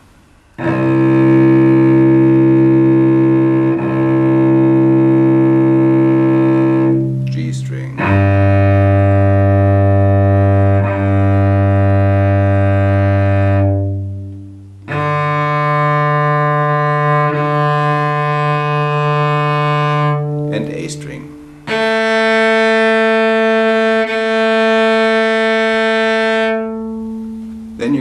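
Cello playing four long notes on different open strings, each a full-length down bow followed by a full-length up bow. The bow change shows as a slight break in the middle of each note, with short pauses between strings.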